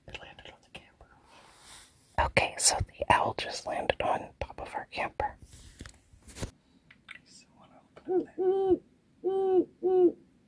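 Hushed whispering, then an owl hooting three times near the end: short, low, steady hoots in quick succession, close enough to be heard loudly through the camper roof.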